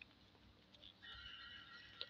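Near silence, with a faint steady high tone that comes in about halfway through.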